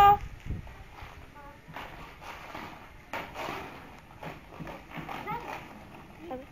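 Inline skate wheels rolling and knocking irregularly over rough concrete, with faint voices in between.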